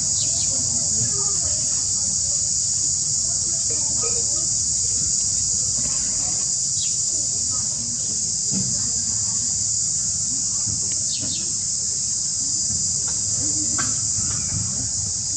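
Steady high-pitched drone of insects, with a few faint short chirps over it.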